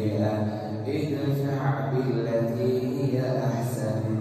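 An imam's melodic Quran recitation during congregational prayer: one man chanting aloud into a microphone, holding long, slowly gliding notes.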